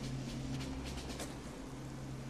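Storm ambience on a film soundtrack: steady rain and wind noise on a beach, with a low steady drone underneath.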